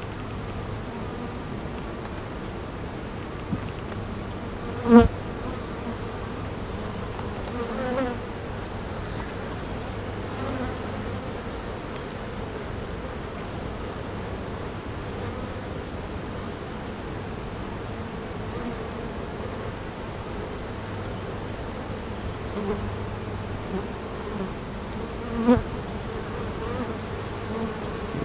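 Honey bees buzzing steadily around an open hive as a frame is lifted out for inspection, with a few brief louder buzzes, the loudest about five seconds in.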